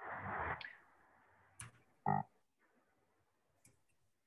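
Quiet pause over a video call: a short hiss at the start, a single faint click about a second and a half in, and a brief hum-like voice sound about two seconds in, then faint computer keyboard clicks near the end.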